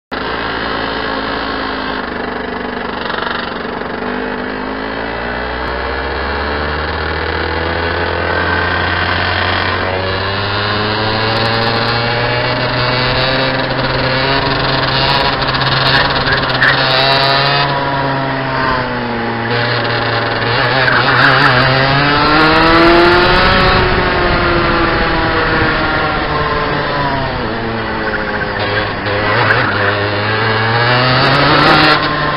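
Rotax 125cc single-cylinder two-stroke kart engine heard onboard, running at low revs at first, then pulling away, with the revs rising and falling again and again as the kart accelerates down straights and slows for corners.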